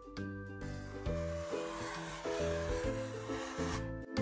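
Black felt-tip marker rubbing across a paper plate as a spot outline is drawn, over quiet background music.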